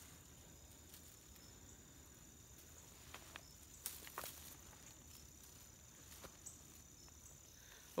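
Near silence over a faint steady high insect drone, with a few faint snaps and rustles of thin dry weed stems being pulled and broken by hand, about three to four seconds in and again near six seconds.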